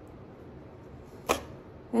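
Quiet room tone broken by one short, sharp click about a second in.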